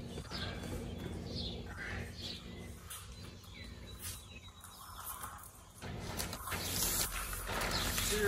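Birds chirping in a few short, separate calls over a low steady hum, and near the end the crinkle of a plastic sheet being unrolled.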